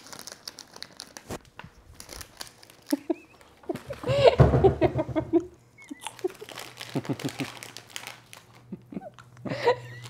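Crinkling and small clicks of a dog treat's packaging being handled, with a woman laughing about four seconds in, the loudest sound.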